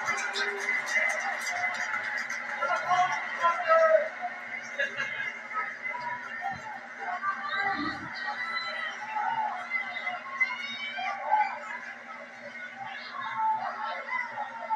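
Audio of a televised boxing match: indistinct commentary voices and arena noise with music, heard through a TV speaker, with a steady low hum beneath.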